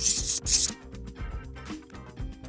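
Cartoon sound effect of a pencil scratching across paper as a line is drawn, lasting under a second, then only light background music.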